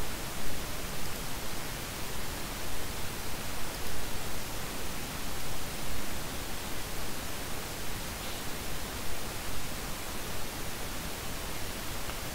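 Steady, even hiss with no other sound in it: the background noise of the recording, with the narration paused.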